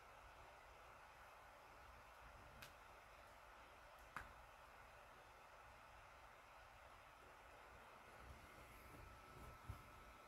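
Near silence: faint steady room hiss, with two faint clicks a second and a half apart and a few soft low thumps near the end.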